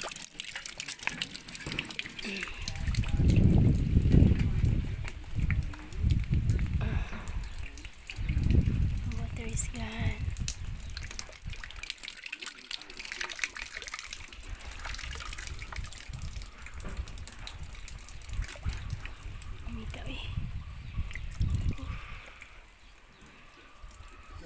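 Water trickling and dripping from the clogged water line as it is cleaned out, broken several times by low rumbling, loudest about three to five seconds in.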